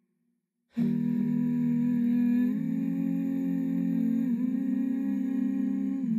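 Layered wordless humming by a woman's voice, stacked into sustained chords with a loop pedal. It starts about a second in after a brief silence, and the whole chord shifts to new pitches twice.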